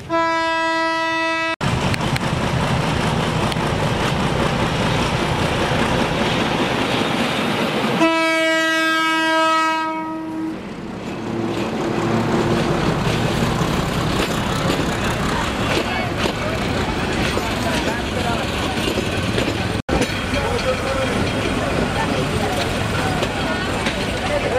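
Train horn sounding twice over the steady rumble of a passing passenger train. The first blast is short, about a second and a half. The second starts about eight seconds in and runs a little longer.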